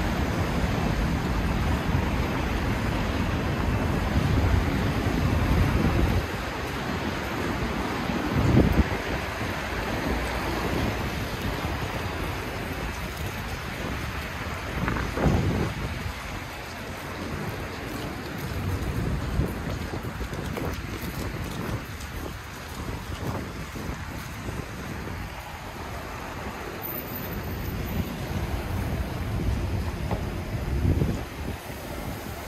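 City street traffic, cars driving past, with wind rumbling on the microphone. The rumble is heaviest in the first six seconds, with brief louder swells about nine and fifteen seconds in.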